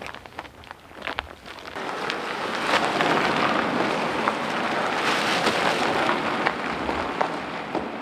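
Cars pulling away across a wet gravel and asphalt yard, with tyre hiss on the wet ground and crunching gravel. It starts with a few faint clicks, then builds to a steady noise about two seconds in.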